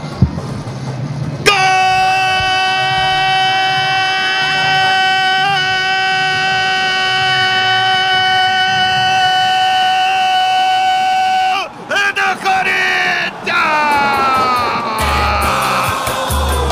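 A football radio narrator's goal call: a man's voice shouting 'gooool' on one long, steady high note, starting about a second and a half in and held for about ten seconds. It breaks off near the twelve-second mark into shorter shouted calls whose pitch falls away.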